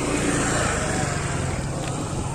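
A motorcycle riding past close by, its engine running, a little louder in the first second.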